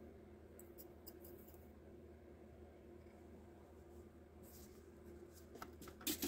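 Near silence: faint steady room hum with a few soft ticks, mostly in the first second and a half and again near the end.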